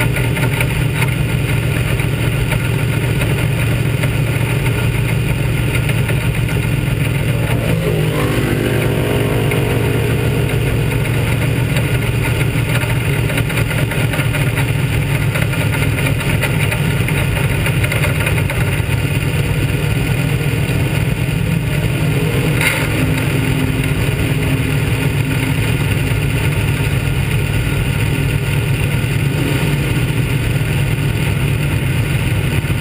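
Dirt modified race car's 358 small-block V8, heard onboard, running loud and steady. Its pitch falls about eight seconds in as the car slows, then it settles into a low, even running note as it rolls along at low speed, with one brief sharp click about two-thirds of the way through.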